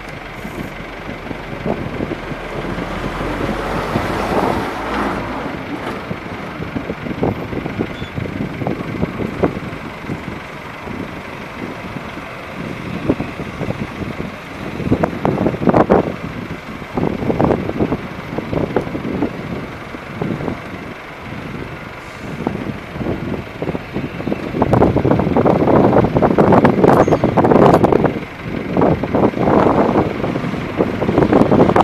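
Diesel engines of wheel loaders and dump trucks working an open sand excavation, a continuous mechanical rumble that swells in uneven surges, loudest in the last few seconds.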